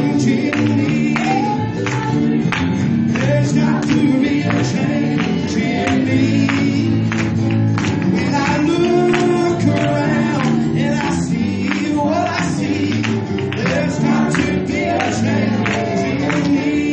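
Gospel music: several voices singing together over band accompaniment, with a steady beat of sharp strokes about twice a second.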